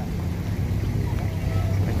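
Low, steady rumble of a motor vehicle engine running, with faint voices behind it.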